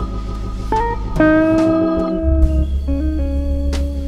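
Gibson L-5 archtop electric guitar playing a slow blues lead fill, single held notes that step and slide in pitch, through a Fender Quad Reverb amp. Organ and drums play behind it, with a sustained bass underneath and a couple of drum hits.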